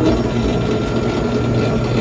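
Electric sugarcane juicer running steadily with a low motor hum as a stalk of sugarcane is fed through its rollers and crushed.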